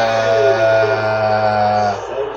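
A man's voice holding one long, low, steady 'aaah' at an even pitch, which cuts off just before the end.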